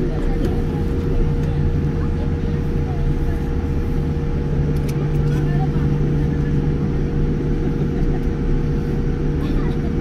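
Cabin noise of a Boeing 787-9 taxiing: a steady low rumble with a constant hum and a steady mid-pitched tone, heard from inside the passenger cabin.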